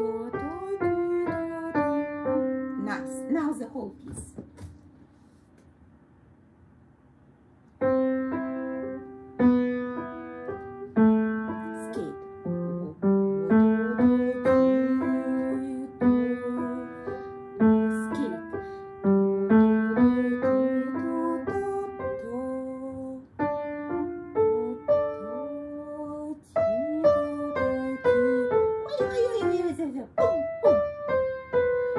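Kawai upright piano played as a simple melody of single notes at an even pace. It stops for about four seconds a few seconds in, then starts again and carries on.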